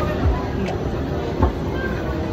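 Wind buffeting the microphone: a steady rumble broken by heavy low thumps, about a quarter second in and again about a second and a half in.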